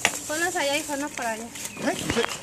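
A high voice with a wavering pitch, held for about a second in the middle, after a sharp click at the start.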